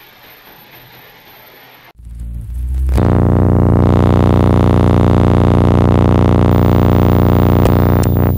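Faint tape hiss, then about two seconds in a loud, steady, low synthesizer drone swells up over a second and holds, a dense buzzing tone with many overtones.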